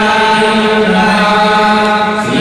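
Hindu priests chanting mantras in male voices, a long, held recitation on a nearly level pitch that steps down slightly partway through.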